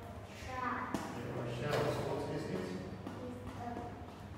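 Speech: a voice talking too quietly to be made out, with one sharp tap about a second in.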